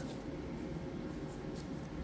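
Metal palette knife scraping and scooping thick sculpture paste on a work surface, a few faint scratchy strokes over a steady low hum.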